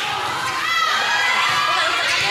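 Courtside crowd shouting and cheering, many voices overlapping at a steady, fairly loud level.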